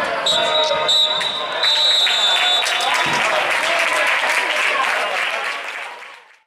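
Football match sound from the ground: players and spectators shouting, with some clapping. A referee's whistle is blown in one long blast, briefly broken about a second in, lasting until about halfway. Everything fades out near the end.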